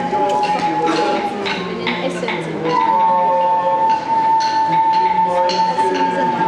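A long, steady, high whistling tone, held at one pitch and sagging slightly, breaks off about a second and a half in, then returns louder about three seconds in and holds. Scattered clicks and voices sound beneath it.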